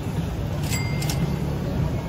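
Outdoor street ambience: a steady low rumble, with two brief sharp clicks a little under half a second apart, about a second in.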